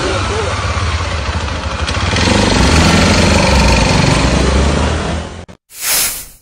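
Motorcycle engines running amid shouting voices in a loud, distorted phone recording. The sound cuts off abruptly near the end, followed by a brief whoosh transition effect.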